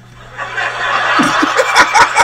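Laughter that swells up about half a second in, a crowd's laughing haze first, then a man's snickering laugh over it from just past a second in.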